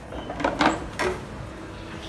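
Plastic food processor lid and bowl being handled and unlatched, with a few short clicks and knocks between about half a second and one second in.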